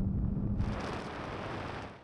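Toyota 86 sports cars accelerating flat out in third gear: a steady engine drone at first, giving way about half a second in to a loud rush of wind on the microphone that fades towards the end.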